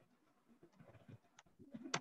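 Quiet room tone with a few faint computer keyboard key clicks as code is typed, two of them sharper about a second and a half and just under two seconds in, over a faint low sound in the second half.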